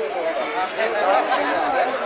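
Men's voices talking over one another.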